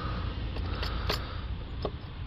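A few short, sharp clicks and light knocks of a new plastic throttle body being pushed and seated into the engine's intake by hand, over a steady low background noise.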